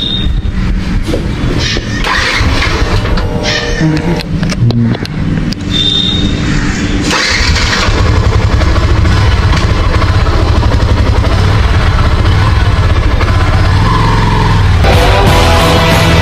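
Single-cylinder Yamaha motorcycle engine running at low speed as the bike rolls along, with background music over it. The sound gets louder about seven seconds in.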